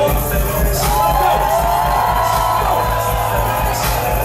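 Electronic dance music with a steady, heavy bass beat. A chopped vocal sample stutters 'it it it' right at the start, then a held melodic line sounds over the beat for most of the rest.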